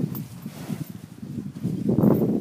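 Dairy cows close by, cropping and tearing fresh pasture grass: a quick, irregular run of crunching rips.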